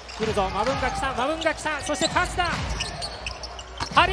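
A basketball bouncing on a hardwood court during live play, as a series of short knocks in the second half with one sharp, loud knock near the end.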